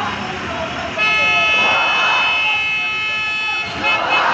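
A vehicle horn held in one long steady blast of nearly three seconds, starting about a second in, over the chatter of a crowd at a busy road junction.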